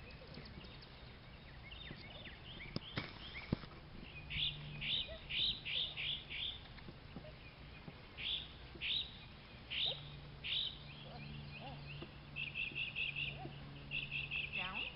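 A songbird singing: a quick run of about six high chirps, then single chirps spaced more widely, then a fast trill near the end.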